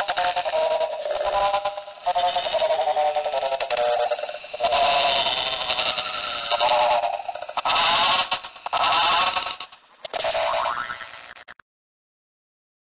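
A SpongeBob cartoon sound clip put through heavy audio effects, its pitch warbling and wobbling. It plays in several stretches with brief dropouts between them and cuts off to silence just before the end.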